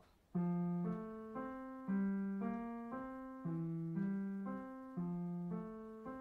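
Piano played with one hand in its lower-middle register: slow rising three-note figures, about two notes a second, each group starting on a stronger low note. Each note rings on and fades into the next.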